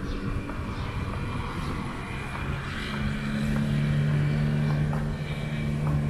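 Road traffic: a steady low rumble of passing vehicles, with one motor vehicle's engine hum growing louder about halfway through and staying strong.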